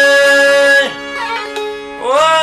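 Albanian folk song: a man's voice holds one long sung note over a strummed long-necked lute. The note ends about a second in, and the lute plays a short, quieter run of plucked notes on its own.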